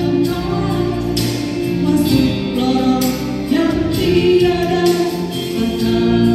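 A women's vocal group singing a church song together into microphones, amplified, over a steady low instrumental accompaniment.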